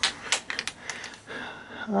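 A few sharp clicks and knocks as a camper trailer's small refrigerator door is unlatched and swung open.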